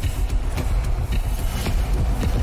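Cinematic logo-intro sound design: a deep, continuous rumble overlaid with several sharp hits and swooshes.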